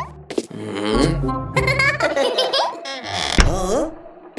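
Cartoon characters' short wordless vocal sounds, with quick rising and falling pitch, over background music. A low thud comes a little over three seconds in.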